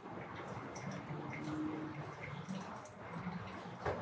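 Thin stream of hot water from a gooseneck kettle pouring in a circle onto a coffee bed in a plastic pour-over dripper, a faint steady trickle: the second pour, up to 160 grams.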